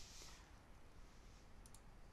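Near silence: room tone, with a faint double click from a computer mouse near the end.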